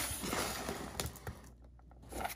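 Hand handling a cardboard shipping box, folding back its flap: a rustle and scrape of cardboard with a light knock about a second in, dying away in the second half.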